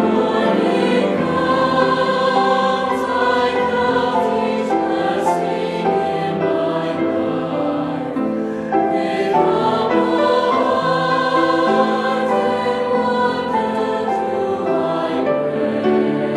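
Mixed choir of men's and women's voices singing a slow, sustained piece in harmony, accompanied by piano.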